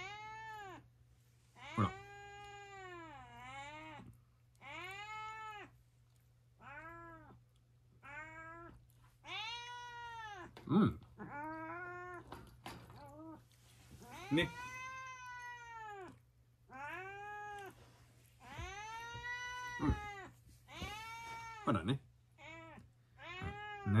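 A white cat meowing over and over, about eighteen calls at roughly one a second, each rising and then falling in pitch, some drawn out, some short. A faint steady low hum runs underneath.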